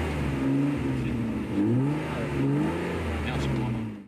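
BMW E30's engine being revved repeatedly, its pitch climbing and dropping back several times, then cutting off suddenly at the very end.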